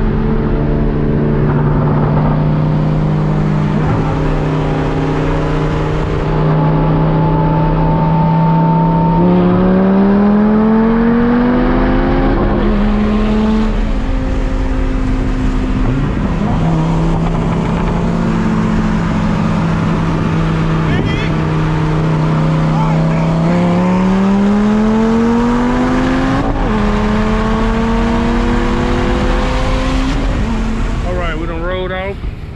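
V10 sports-car engines heard from inside the cabin, cruising at steady revs and then twice pulling hard with a long rising note that breaks off suddenly, about nine and twenty-three seconds in.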